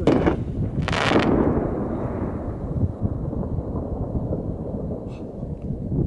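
Aerial fireworks bursting: two sharp bangs about a second apart, the second one echoing and rumbling away over the next few seconds.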